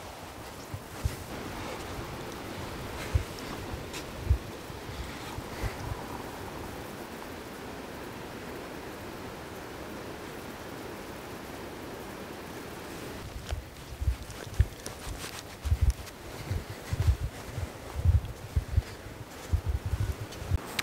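Steady rush of flowing river water, with irregular low thumps in the last several seconds.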